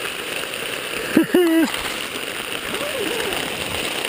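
Heavy rain falling steadily on the tent fabric, heard from inside the tent. About a second in comes one short, high-pitched voice sound.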